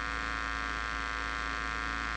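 Steady electrical mains hum, a buzzy drone with many even overtones that holds unchanged throughout.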